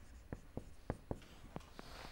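Marker pen writing on a whiteboard: a faint run of short, irregular strokes and squeaks as the characters are drawn.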